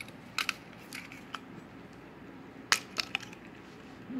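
Small clicks and taps of a plastic cap-launcher bottle opener being fitted over a glass beer bottle's crown cap, then one sharp, loud click a little under three seconds in, followed by two lighter clicks: the cap being levered off and caught in the launcher.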